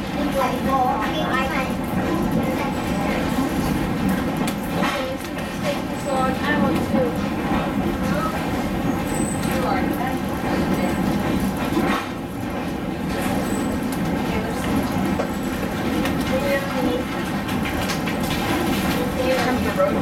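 Steady rolling noise heard inside a vintage wooden passenger coach moving along the track: a continuous rumble of wheels on rail, broken by a few sharp knocks.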